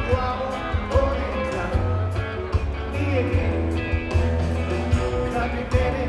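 Live rock band playing: electric guitars, bass and drums with strong low end and sharp drum hits, and a melody line that bends in pitch over the top.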